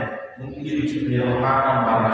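A man's voice from the pulpit in long, drawn-out phrases held on a fairly steady pitch: the preacher intoning his sermon, with a short dip about half a second in.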